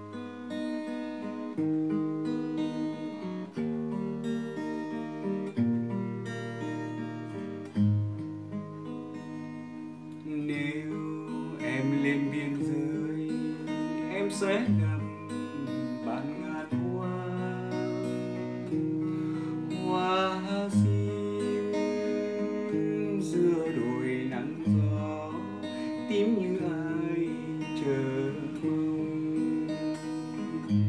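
Nylon-string classical guitar played solo, fingerpicked, with deep bass notes under a melody: the instrumental introduction to a song.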